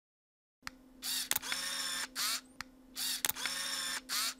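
Camera lens autofocus motor running after autofocus is triggered from the phone app. It gives sharp clicks and short bursts of high whirring, in two similar cycles about two seconds apart, as the lens drives its focus.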